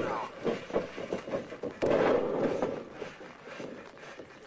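Wrestlers going down and scuffling on a plastic-tarp-covered mat, with a loud rough rustle lasting about a second, beginning about two seconds in. A man says a word and laughs near the start.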